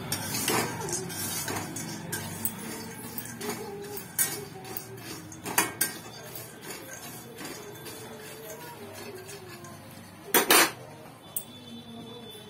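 A spatula scraping and clinking in a steel kadhai while dry-roasted peanuts are stirred and tossed, the nuts rattling against the pan. Scattered clicks run throughout, with one louder knock about ten and a half seconds in.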